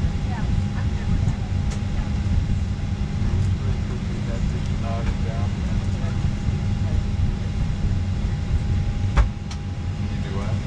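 Airliner cabin noise: a steady low rumble with a thin steady hum over it. Faint voices come through about halfway, and there is a sharp click near the end.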